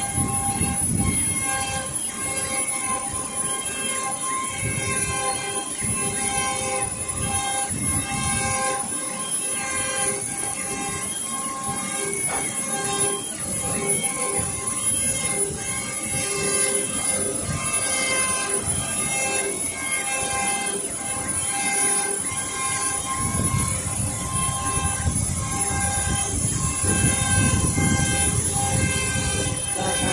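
Audley A3 UV flatbed printer printing: the print-head carriage runs back and forth, its drive whining in steady tones that stop and start with each pass, over a low rumble that gets louder in the last several seconds.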